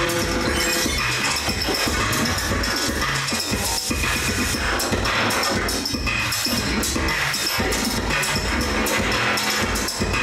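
Live electronic music: a dense, glitchy texture of clicks and crackles over pulsing low bass, holding a steady loudness throughout.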